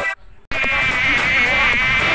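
Buzzing insect sound effect, a loud, wavering buzz that starts about half a second in after a short near-silent gap.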